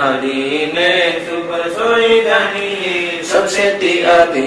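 A man's voice chanting Hindi devotional verses in a sing-song recitation, drawing the syllables out into long held, gliding notes.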